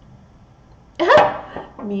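A Shih Tzu gives one short, loud bark, rising in pitch, about a second in.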